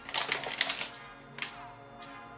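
Clear plastic zip bag crinkling as it is handled and laid down, a dense crackle for about a second, then one short click. Background music plays under it.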